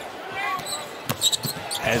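A basketball being dribbled on a hardwood court: a few sharp bounces about a second in, over low arena crowd noise.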